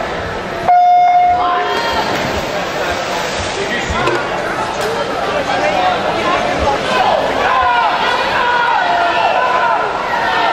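Electronic start signal on a swimming pool's starting system sounding one steady beep about a second long, which marks the start of the race. Spectators cheer and shout at once and keep it up through the rest.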